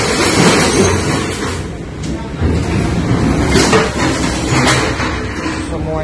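Storm-tossed ship's galley: a steady low rumble of the vessel and sea, with a few sharp knocks and clatter of loose objects about halfway through and again near five seconds in.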